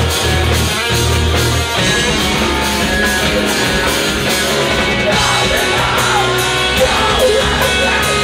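A live rock band playing loudly: electric guitars, bass guitar and a drum kit, heard through the club's PA.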